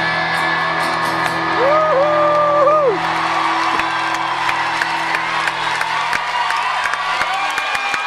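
A live band's final sustained chord ringing out and fading, with a loud held whoop close by about two seconds in. From about three seconds on, the crowd cheers, whoops, whistles and claps as the music dies away.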